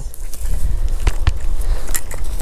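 Steady low rumble of wind buffeting the microphone, with a few faint clicks about halfway through.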